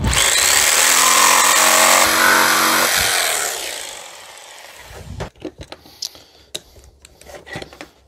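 Corded jigsaw running and cutting through a softwood stake for about three seconds, then its motor winding down. A few light knocks and clicks follow.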